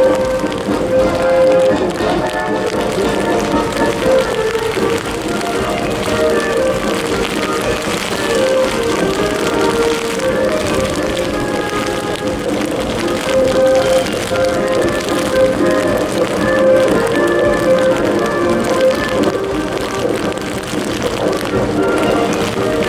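A military band playing a march outdoors in heavy rain, the rain falling steadily under the music.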